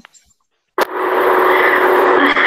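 A moment of silence, then a click and a sudden loud, steady rushing noise with a faint hum under it: background noise picked up by a video-call participant's microphone as it comes on.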